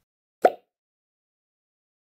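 A single short editing sound effect about half a second in, dying away within a fraction of a second.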